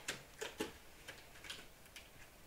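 Faint, scattered clicks and taps of a clear plastic die case being handled and turned over on a table. There are about half a dozen small ticks spread across two seconds.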